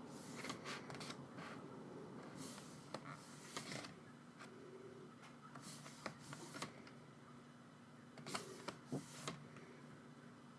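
Pages of a photo book being turned by hand: faint paper rustles and flicks in several short bursts.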